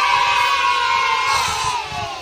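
A cheering sound effect: a group of children's voices holding one long 'yay', sinking slightly in pitch as it ends.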